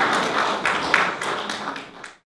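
Audience applauding, a dense patter of many hands clapping that thins out and fades near the end.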